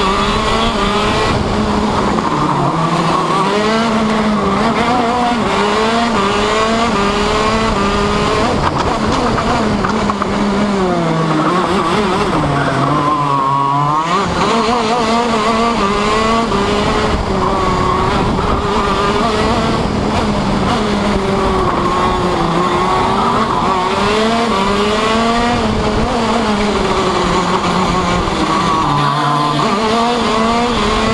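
Racing kart's two-stroke engine heard onboard at racing pace, its pitch climbing along each straight and falling off under braking for the corners. About halfway through it drops to a low note for a slow corner, then climbs back up.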